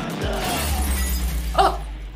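Film sound effect of window glass shattering as a man crashes through it, over a low rumbling score, with a short loud burst of sound near the end.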